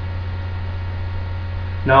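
Steady low electrical mains hum, fairly loud and unchanging, in a pause between spoken sentences; a man's voice starts at the very end.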